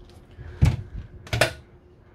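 Two knocks, about three quarters of a second apart, from a wooden cupboard door in a motorhome's furniture being opened.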